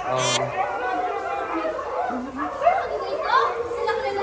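Indistinct chatter of several people talking at once, with one short, sharp high-pitched call right at the start.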